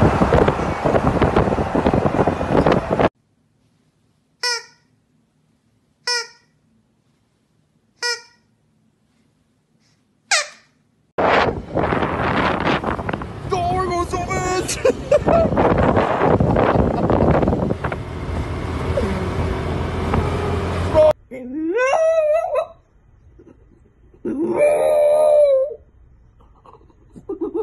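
Wind rushing over the microphone of a moving vehicle. Then, after a silence, four short high-pitched calls spaced about two seconds apart, followed by a stretch of dense outdoor noise. Near the end a French bulldog howls twice, each howl rising and wavering.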